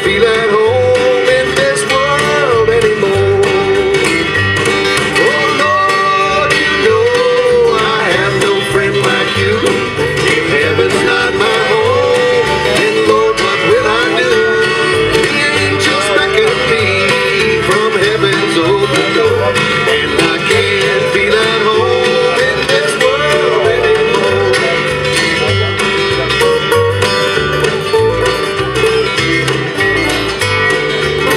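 Acoustic bluegrass-gospel band playing an instrumental passage: a wavering lead melody over strummed acoustic guitar, a steady upright-bass pulse and light percussion.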